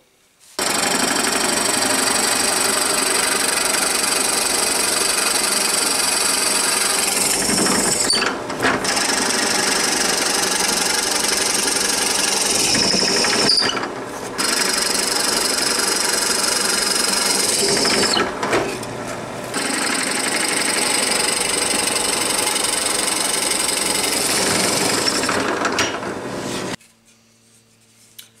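Benchtop drill press running under load, its bit boring tuner-post holes through a wooden guitar headstock. The holes were pilot-drilled from the back so the wood does not chip out. The sound drops briefly three times and stops shortly before the end.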